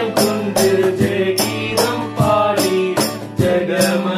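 Male voices singing a Tamil song over a strummed acoustic guitar, with a steady beat of cajon and hand percussion striking about twice a second.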